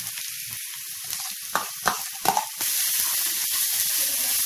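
Food sizzling in a frying pan over medium flame, with a few short knocks of a utensil in the pan in the middle. The sizzle turns louder about two and a half seconds in.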